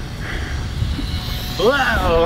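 Wind rumbling on the microphone, with the faint whir of a small electric RC airplane flying overhead. Near the end a man exclaims "whoa" and laughs.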